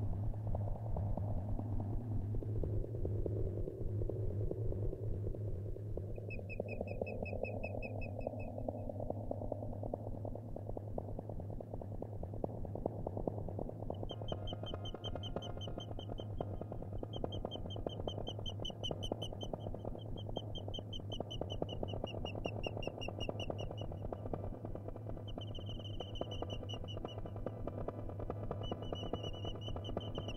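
Electronic feedback music from a no-input mixing desk: a steady low hum under a rough low noise, with a high whistling feedback tone entering about six seconds in. From about halfway, a run of held, wavering high tones, each lasting a couple of seconds, with short gaps between them.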